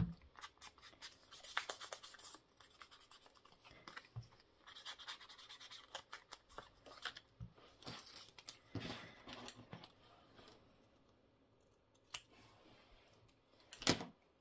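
Paper being handled on a cutting mat: quick crackles and taps at first, then a couple of brief scrubbing passes of an ink blending tool rubbed over paper tag edges. It goes nearly quiet before one sharp click near the end.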